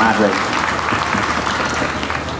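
An audience applauding with many hands clapping in a dense, even patter.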